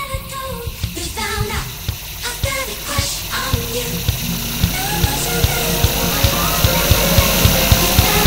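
Dubstep mash-up building toward a drop: a sung vocal over a steady kick drum, with a rising noise sweep as the music grows steadily louder and the drum hits come closer together in the second half.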